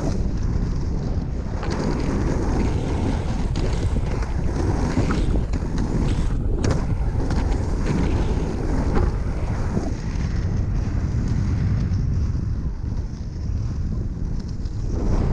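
Three-wheel inline skates with 110 mm wheels rolling over rough asphalt in a steady rumble, with wind buffeting the microphone.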